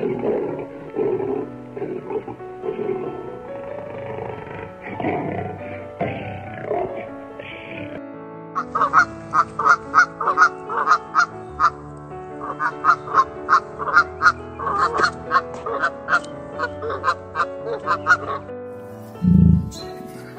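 Domestic geese honking in a rapid run of sharp, repeated calls, several a second, over background music. It starts about eight seconds in and stops shortly before the end. Before it, lower, irregular animal calls are heard over the music.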